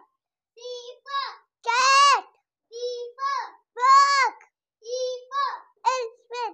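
A young child chanting the alphabet phonics in a high sing-song voice. Each phrase is two short syllables followed by a longer, drawn-out word, about every two seconds, with clean silence between.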